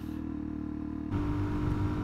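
Suzuki DR-Z400SM's single-cylinder four-stroke engine running steadily through its stock exhaust, heard from the rider's helmet with wind rush on the microphone. About a second in, the sound jumps to a louder highway cruise with more wind noise.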